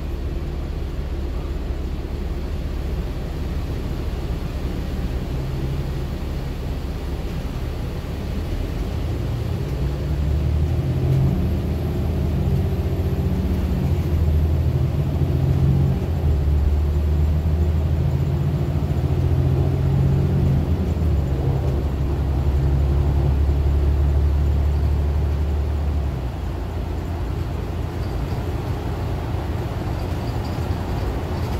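City transit bus engine and drivetrain heard from inside the cabin: a low idle at first, then growing louder about a third of the way in as the bus pulls away and accelerates, its pitch stepping up and down, and easing off again near the end as it cruises.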